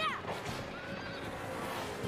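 A pony whinnies once at the very start, its pitch rising sharply and then falling, over background music.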